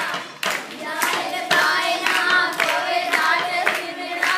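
A group of schoolgirls singing a baila song together, clapping their hands in a steady beat.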